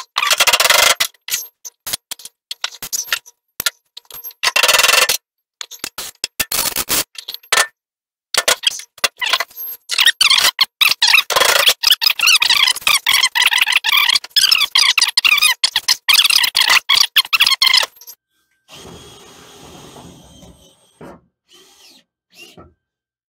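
Work on a new sheet-steel truck floor pan: a run of sharp knocks and clatters, then a long stretch of wavering, whining noise from a cordless drill driving into the sheet metal for self-tapping screws. Fainter handling noise follows near the end.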